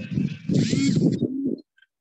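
A man's voice performing a sung poem, cutting off abruptly about a second and a half in.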